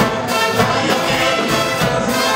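An orchestra with trumpets, trombones and violins playing a full, steady passage.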